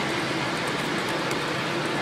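Steady city street background noise, an even rush with a faint low hum running under it.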